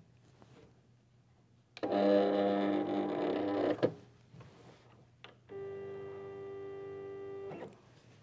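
Digital craft cutter's motors whining as its rollers draw in the cardstock on its adhesive mat: a steady whine for about two seconds, then after a short pause a second, quieter and higher-pitched whine for about two seconds. A few faint handling clicks come before each.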